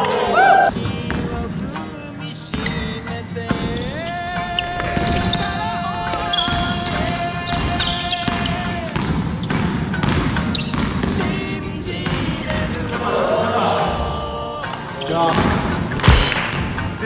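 A basketball being dribbled on a hardwood gym floor, repeated bounces, under background music.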